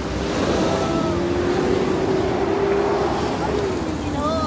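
Loud city street traffic noise with a low rumble, and a long steady tone held for about three seconds that drops in pitch near the end.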